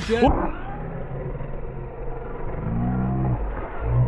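A radio-controlled off-road car running on the dirt track, heard as a low, steady hum with a brief rise in pitch near the end. A man exclaims "oh" at the very start.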